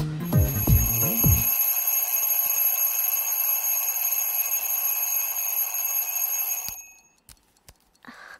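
Bell alarm clock ringing continuously, a steady metallic jangle, for about six and a half seconds, then cut off suddenly. A few faint ticks follow. Background music fades out in the first second or so.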